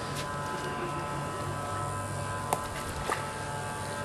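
Steady low buzzing hum with several fixed tones, and two short faint clicks about two and a half and three seconds in.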